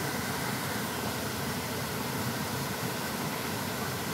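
Small waterfall pouring into a pool: a steady, even rush of falling water with no change.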